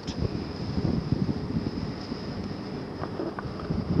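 Wind buffeting a camcorder's built-in microphone high up on an exposed chimney, an irregular low rumble.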